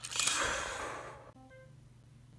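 A person's breathy exhale close to the microphone, fading out over about a second, followed by a brief faint voiced sound.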